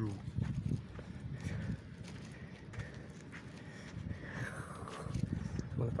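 Bicycle ridden over a sandy path: a continuous run of irregular low knocks and rattles from the bike as it rolls over bumps.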